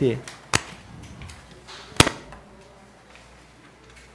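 Two sharp knocks picked up by a desk microphone, a lighter one about half a second in and a louder one about two seconds in, then quiet room sound.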